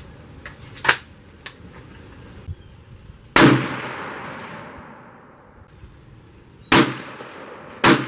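A century-old German drilling, a three-barrel gun with two 16-gauge shotgun barrels and a 9.3×72R rifle barrel, fired three times. The first shot comes a little over three seconds in, and its ring fades over a couple of seconds. Two more shots follow about a second apart near the end. Two faint sharp clicks come before the first shot.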